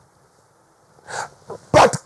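A brief pause in a man's speech, then a quick, sharp breath about a second in, and he starts talking again near the end.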